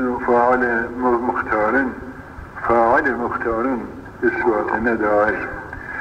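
A man's voice chanting Arabic Quran verses in a slow, melodic recitation, with long held and gliding notes and short pauses. The sound is muffled, as on an old tape recording.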